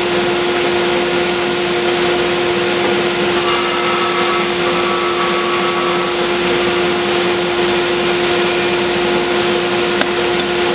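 Band saw running with a steady hum, its blade cutting lengthwise into the end of a thick wooden workbench leg to saw a tenon cheek.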